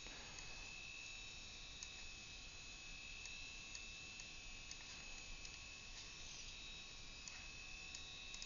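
Quiet room tone: a steady low hiss with a thin high hum, broken by a few faint computer-mouse clicks.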